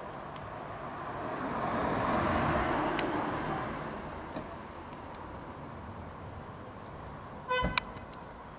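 A car passing on a nearby road, its tyre and engine noise rising, loudest about two and a half seconds in, then fading away. A short high toot sounds near the end.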